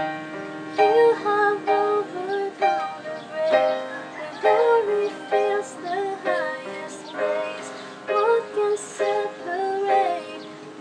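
A woman singing a slow worship song, accompanying herself with chords on a digital piano.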